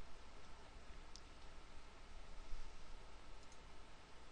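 Low steady hiss and room tone, with a faint computer-mouse click about a second in.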